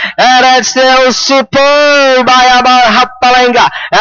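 Horse-race caller's commentary, fast and sing-song, in a loud raised voice that runs on with only brief breaks.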